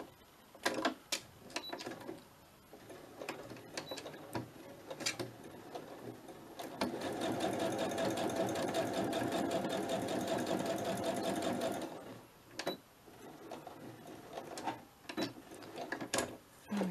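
Electric sewing machine stitching in one fast, even run of needle strokes lasting about five seconds in the middle, with scattered light clicks before and after it.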